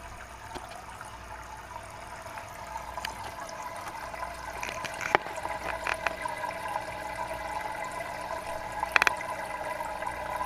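Aquarium filter outflow trickling and splashing into a fish tank, growing louder over the first few seconds, with a couple of sharp clicks about halfway through and near the end.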